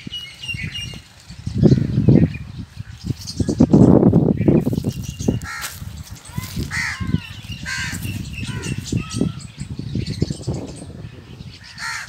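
Crows cawing several times among other bird calls, over uneven gusts of wind buffeting the microphone that are loudest about two and four seconds in.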